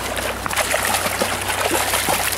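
Creek water splashing and rushing close to the microphone as a hooked trout is reeled in to the net, over a steady low hum.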